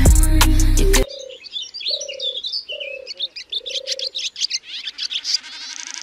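A pop song cuts off about a second in. A dove then coos several times over high bird chirps, and a held synth chord swells in near the end, all part of a song's intro.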